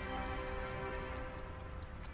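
A pocket watch ticking evenly, about four ticks a second, over soft sustained music.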